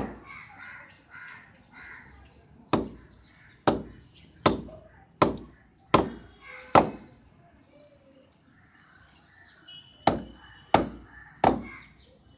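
A dumbbell slammed repeatedly onto a plastic USB pen drive on a stone countertop: about ten sharp knocks, a loud one at the start, a quick run of six about three-quarters of a second apart, a pause, then three more near the end. The tough plastic case does not break.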